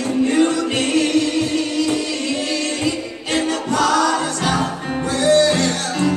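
A small gospel vocal group singing live together, holding sustained notes over an instrumental accompaniment with a steady beat.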